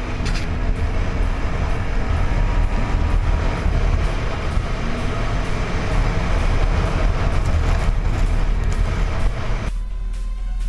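ATV engine running while riding at speed, mixed with loud wind noise rushing over a helmet-mounted camera's microphone. The sound cuts in suddenly at the start and falls away just before the end.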